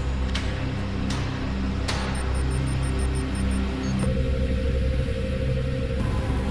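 Dark, droning background music of low sustained tones, with a few whooshing sweeps in the first two seconds and a quick run of high electronic beeps in the middle; a new held note comes in about four seconds in.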